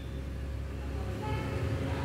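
Steady low hum of the tattoo-removal laser unit idling with no pulses firing, joined about a second in by a faint pitched tone.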